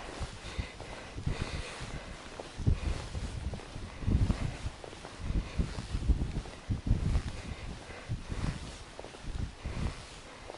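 Irregular rustling and soft low thumps of gloved hands and clothing as a fishing line is hauled in hand over hand through a hole in the ice, with a fish resisting on the end.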